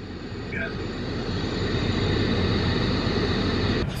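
Compact track loader running a hydraulic brush cutter as it mows down standing corn, a steady machine drone that grows gradually louder.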